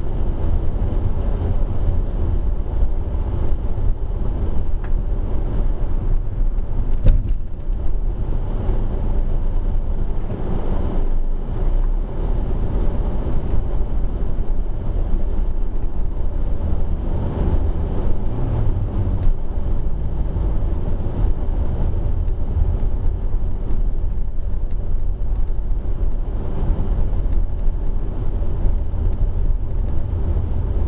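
Steady low rumble of a car's engine and tyres on an icy, snow-covered road, heard from inside the moving car, with one sharp knock about seven seconds in.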